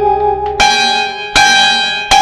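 Bell-like chime in a Telugu film song's instrumental passage, struck twice about three quarters of a second apart, each stroke ringing on and fading.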